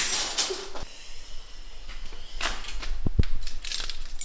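A bunch of keys jingling briefly near the end as it is picked up off a carpeted floor, after a few soft knocks and rustles.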